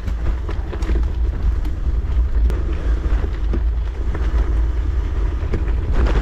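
Mountain bike riding down a dirt and gravel trail: a steady low rumble of wind on the microphone and tyres on the ground, with scattered clicks and rattles from the bike.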